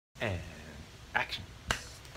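A man's voice with a falling pitch, then a spoken "Hi," followed about 1.7 seconds in by a single sharp finger snap.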